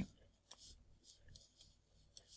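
Near silence: room tone with two faint, short clicks, about half a second in and again just past a second in.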